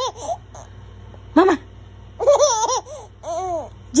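A four-month-old baby laughing in two bouts of high, rising-and-falling laughs in the second half.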